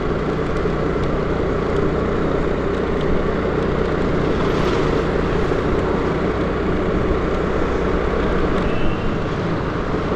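Honda scooter's engine running steadily at low road speed, heard from the rider's seat, along with road noise.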